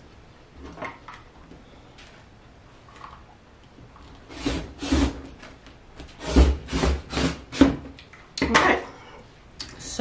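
Rotary cutter slicing through fabric along an acrylic quilting ruler on a cutting mat: a series of rasping strokes that start about four seconds in and go on for some five seconds.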